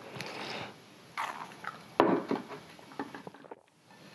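Drink sipped through a straw, then a glass of water set down on a table with one sharp knock about two seconds in, followed by a few light clicks.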